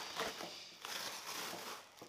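Cardboard shipping box being torn open by hand: ripping and crinkling of cardboard flaps, dying away near the end.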